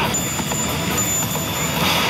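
Loud, steady din of a pachinko hall, with music and sound effects from a Bakemonogatari pachislot machine mixed in.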